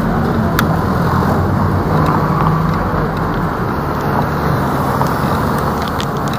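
Road traffic noise on a busy city street, with a double-decker bus running close by and a low engine hum that comes and goes.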